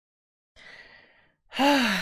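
A woman takes a soft breath, then lets out a loud voiced sigh about a second and a half in.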